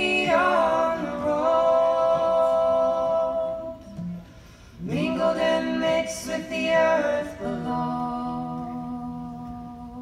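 A woman and two men singing close three-part harmony into one microphone, on long held notes in phrases a few seconds long, with little or no instrument heard.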